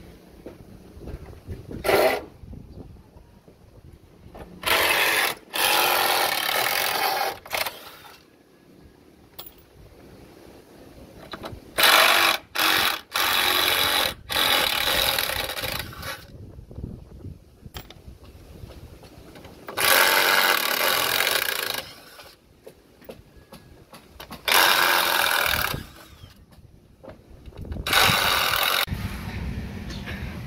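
Construction tool work on wooden formwork: a tool runs in repeated loud bursts of one to three seconds each, with quieter gaps between.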